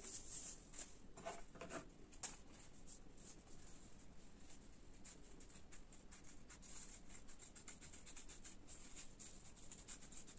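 Faint, irregular small snips and paper rustles of scissors cutting folded coloured paper along a pencilled arc.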